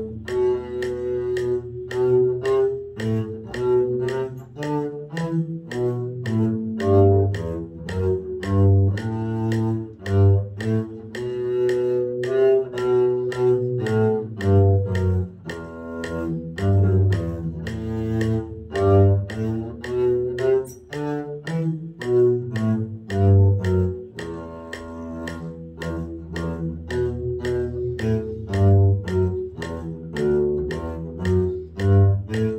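Double bass played with a bow (arco), a carol melody line of steady, evenly timed notes in the instrument's low and middle range.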